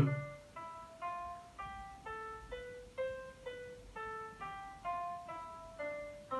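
Notation software's sampled piano playing back single notes one at a time as each is entered: steps of the C melodic minor scale, about two notes a second, each note ringing briefly before the next.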